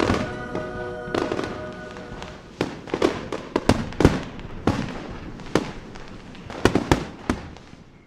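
Aerial fireworks bursting: a string of irregular sharp bangs, roughly a second apart, the loudest about four seconds in. Background music fades out within the first two seconds.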